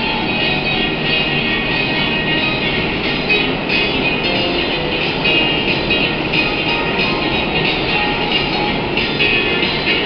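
Portable electronic keyboard playing a rock-and-roll tune, instrumental with no singing, with the noise of a subway train mixed in.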